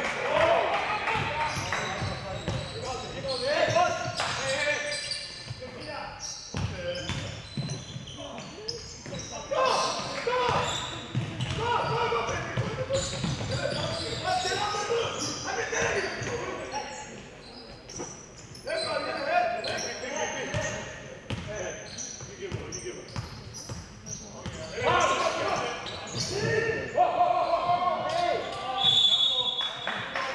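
A basketball bouncing on a hardwood gym floor during live play, with indistinct voices echoing in a large hall. A short high whistle sounds near the end, as play stops.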